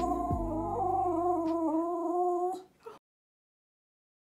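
A dog howling: one long, wavering howl that stops about two and a half seconds in, over the tail of music that fades out.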